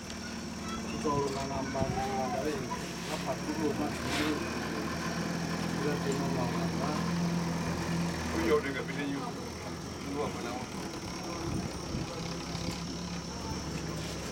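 Indistinct voices of people talking in the background, with a low steady hum underneath that is loudest around the middle.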